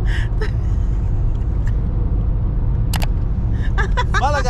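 Steady low rumble of a car driving, heard from inside the cabin: engine and road noise, with a sharp click about three seconds in.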